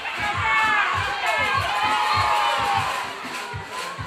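Several high young voices shouting and cheering over one another, loudest in the first three seconds, over background music with a steady beat.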